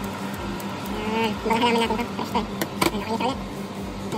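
Kitchen scissors snipping microgreens from a pot, a couple of sharp clicks near the middle, over a steady low hum.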